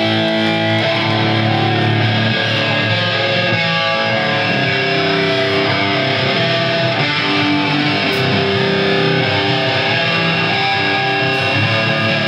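Hardcore punk band playing live, loud and steady: distorted electric guitar chords over bass guitar and drums.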